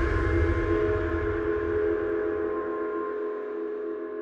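Title-card sound effect: the long ringing tail of a deep cinematic hit, a metallic gong-like chord of several steady tones over a low rumble, slowly fading away. The rumble dies out about two and a half seconds in, and the ringing carries on.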